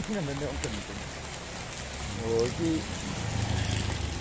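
Rain falling on a wet paved street, a steady hiss of drops on the road. Brief bits of a person's voice come near the start and again about two seconds in, over a low hum.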